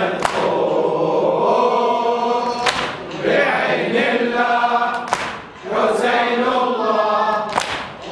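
A group of men chanting the refrain of a Shia mourning latmiya in unison, in phrases of about two and a half seconds. A sharp hit falls about every two and a half seconds, in time with the chant.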